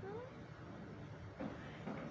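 A very young kitten gives one short, faint meow rising in pitch right at the start. Two short muffled bumps follow, about a second and a half in and near the end.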